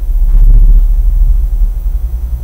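A loud, deep rumble on the recording that swells in the first second and then eases off slowly.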